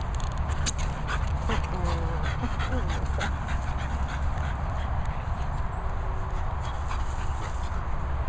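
French bulldog tugging at a rope toy, with short whimpers about a second and a half in and a scatter of clicks in the first few seconds. A steady low rumble of microphone handling noise runs under it as the camera is swung about.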